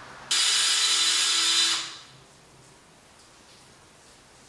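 Power drill spinning a left-hand drill bit into a broken cylinder head stud, running at a steady speed for about a second and a half, then winding down and stopping. The reverse-cutting bit is being used to back the snapped stud out of the block.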